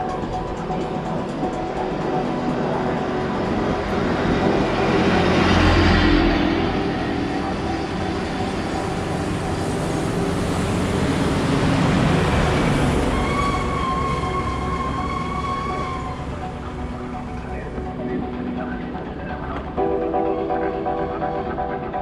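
Road vehicles passing close by, the noise swelling and fading twice, loudest about six seconds in and again about twelve seconds in, with a long horn note lasting about three seconds soon after the second pass.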